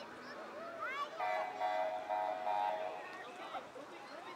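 Faint voices of spectators waiting along the roadside, with high-pitched calls. A steady held tone rises out of them for about two seconds, starting about a second in.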